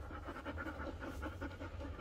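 Golden retriever panting softly and quickly, close to the microphone.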